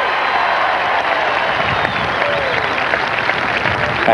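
Large crowd in stadium stands applauding steadily, with a few scattered voices calling out.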